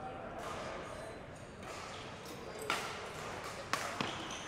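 Badminton rackets striking the shuttlecock, two sharp hits about a second apart in the second half, over a low murmur of voices in a large hall.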